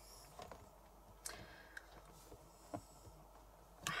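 Faint handling of a wire-bound book with card covers: mostly quiet, with a few light clicks and rustles.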